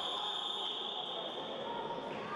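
A referee's whistle blown in one long, steady, high-pitched blast lasting about two seconds, over faint sports-hall background noise.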